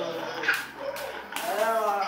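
A toddler's voice making long, wordless pitched sounds that glide down and then rise, with a brief knock about half a second in.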